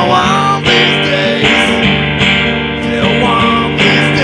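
Live rock band playing, led by a strummed acoustic guitar with an electric guitar, in a steady driving rhythm.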